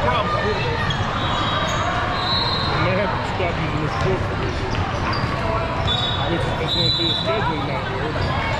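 Many voices talking at once in a large gym hall, with basketballs bouncing and a few short high squeaks.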